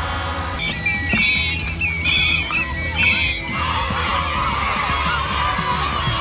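Colourful plastic toy horns honking in several short, high blasts over a crowd, followed by the crowd shouting and cheering, all over background music.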